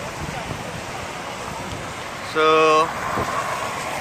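Steady outdoor background noise, an even low hiss, with a man saying a single word a little past halfway.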